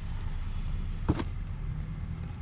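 Shoes being handled in a cardboard shoebox, with one sharp knock about a second in, over a steady low rumble.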